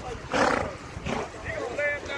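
A horse snorting: a short, loud, breathy blast about a third of a second in, and a weaker one about a second in. People's voices call in the background.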